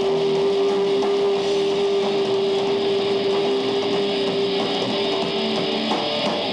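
Heavy metal band playing live, with one steady note held over the music for nearly six seconds and stopping just before the end.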